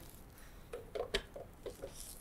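Faint handling sounds of a metal monitor stand being lifted out of a cardboard box: a scatter of light taps and knocks in the second half, with one sharper click among them.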